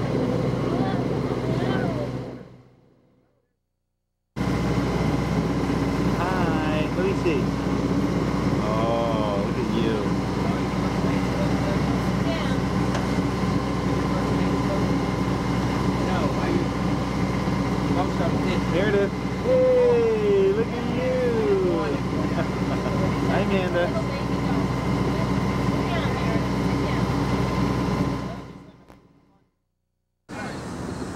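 A boat's engine running under way with a steady drone, with people's voices over it. The sound fades to silence for about two seconds near the start, comes back, and fades out again near the end.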